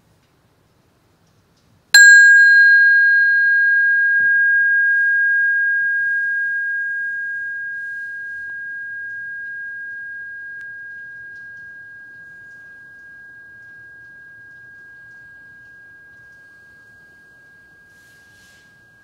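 A small metal meditation bell struck once about two seconds in, ringing one clear high tone whose brighter overtones die away within a couple of seconds while the main note fades slowly over the next sixteen seconds.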